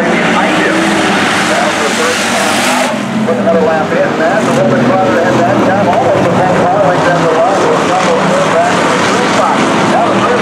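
Several hobby stock race cars' engines running around a dirt oval, their pitch rising and falling continually as they rev and ease off. A rushing noise sits over the first three seconds.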